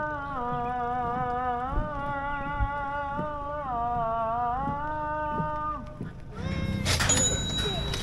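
Background music of sustained chords that shift pitch every second or so. About six seconds in, it cuts off sharply to louder live outdoor sound with voices.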